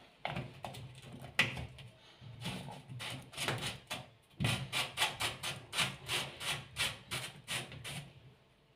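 A plastic hose elbow being pushed and twisted onto a washing machine's water inlet valve: handling noise of plastic on plastic, a few scattered clicks and scrapes at first, then a quick string of scraping clicks, about three or four a second, through the second half.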